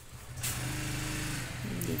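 A motor vehicle engine running steadily, with a low hum that comes in about half a second in.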